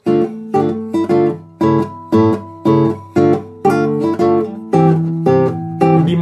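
Nylon-string classical guitar playing short, crisp, detached notes and chords, about two a second, each cut short before the next. This is a demonstration of lively articulation that keeps a moderate-tempo passage from sounding low in energy.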